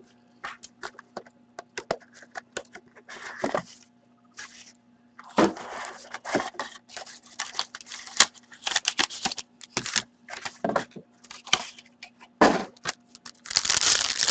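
Cardboard hockey-card hobby box being opened by hand: a string of light taps and clicks with bursts of scraping and crackling as the box, its lid and its wrapping are handled and the inner box is slid out.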